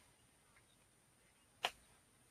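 Near silence, broken once by a single short click near the end.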